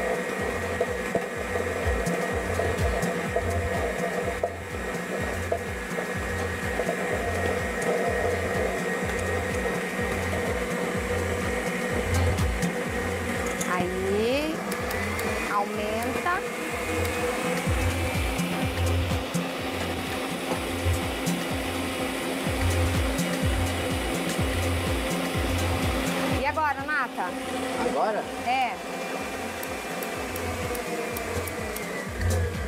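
Electric stand mixer running steadily, beating a cream and melted-gelatin mixture in its steel bowl; the motor's whine rises in pitch about halfway through.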